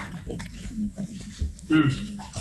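Indistinct low voices talking briefly, with no clear words.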